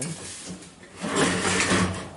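Sheet metal being handled and slid close to the microphone, a rubbing, scraping noise that grows louder about a second in.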